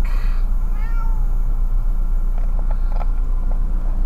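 A car's engine running, heard from inside the cabin as a steady low hum. About a second in there is a short, faint, high-pitched vocal call that rises and falls.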